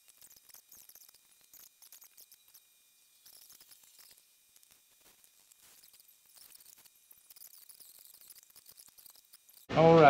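Near silence, with faint scattered clicks and ticks and a faint steady high-pitched tone.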